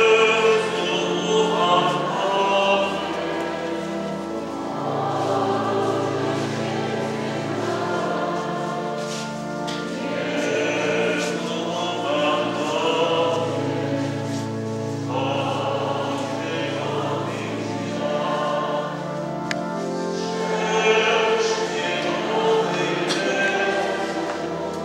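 Choir singing, with long held notes over a sustained low accompaniment.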